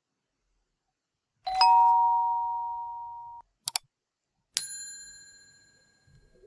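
Sound effects of a subscribe-button animation: an electronic two-note chime about a second and a half in that fades out, a quick double click, then a bright bell ding that rings out near the end.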